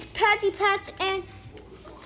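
Only speech: a child's high-pitched voice calling out a few quick, excited words in the first second or so.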